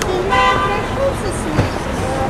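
City street traffic noise with a car horn honking once briefly, a steady held tone about half a second long, with indistinct voices of people passing by.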